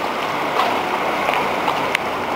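Steady rushing noise of an empty underground car park, with a few faint ticks of footsteps.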